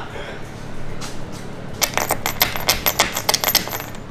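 A quick run of sharp clicks, many to the second, starting about two seconds in and lasting about two seconds.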